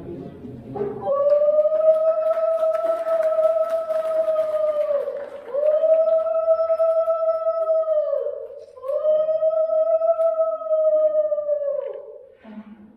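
A conch shell blown in three long, steady blasts, each held a few seconds and sagging in pitch as the breath runs out. This is the customary conch sounding that marks the moment of an unveiling.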